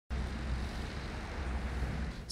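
Steady outdoor background noise: a low rumble with a soft hiss.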